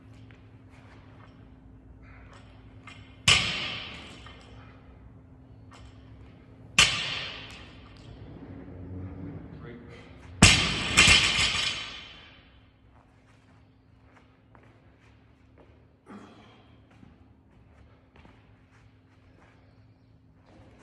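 Loaded barbell with rubber bumper plates dropped onto the gym floor three times, each a loud bang that rings and echoes through the large room; the third drop lands with a quick second bounce. A much softer thud follows later.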